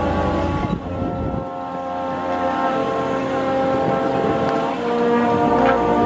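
Brass ensemble of trumpets, French horn, tuba and trombones playing slow sustained chords. The tuba's low notes drop out about a second and a half in and come back near the end.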